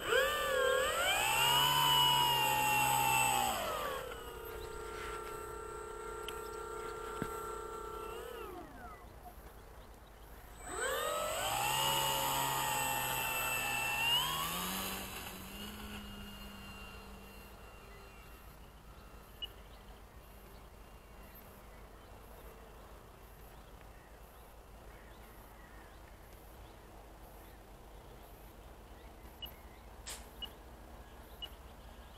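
Durafly Slow Poke model plane's electric motor and propeller revved up twice. Each time the whine climbs quickly to a high pitch, holds for a few seconds, then drops to a lower steady pitch. The first run cuts off; the second fades away.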